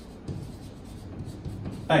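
Chalk scratching on a blackboard as a word is written out in a run of short strokes.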